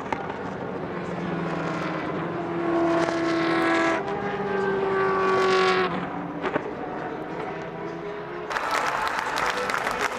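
Race car engines running past at speed, two passes a few seconds apart, each note dropping slightly as it goes by. Applause and crowd noise start suddenly near the end.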